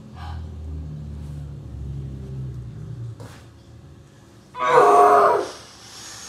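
A low rumble during the first three seconds, then a boy's short, loud strained vocal groan of effort about five seconds in, lasting under a second, as he lifts his legs in an ab exercise.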